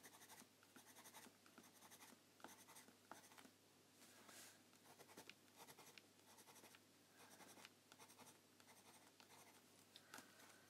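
Faint scratching of a Faber-Castell Pitt pencil drawing on watercolour-painted sketchbook paper, in many short, quick strokes. The pencil goes on smoothly without dragging at the page.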